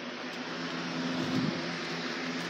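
Steady low mechanical hum with a broad hiss, like a fan or appliance running in the room.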